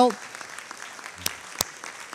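Hand claps close to a lectern microphone, with two sharp claps a little past the middle, over soft, even applause from the room.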